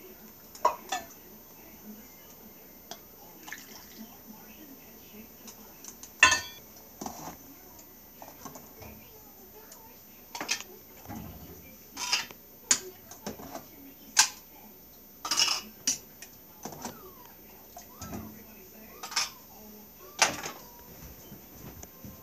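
Kitchen clatter of glass mason jars and utensils, with about fifteen sharp clinks and knocks at irregular intervals as jars are filled and set down on the counter.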